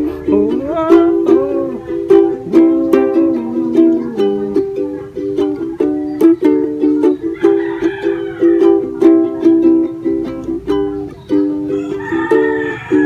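Ukulele strummed in a steady rhythm, about three to four strokes a second, cycling through the chorus chords G, D, E minor and C.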